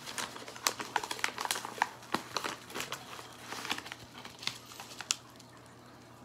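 Paper packaging handled and crinkling as a manila envelope is opened and its contents slid out: a run of small crackles and ticks that thins out near the end.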